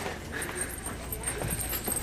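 Quick footsteps of shoes on a hard shop floor, a few irregular clacks, with faint voices in the background.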